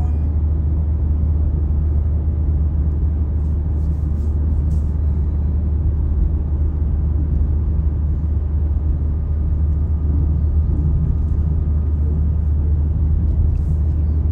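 Steady low rumble of a car travelling at road speed, engine and tyre noise heard from inside the cabin.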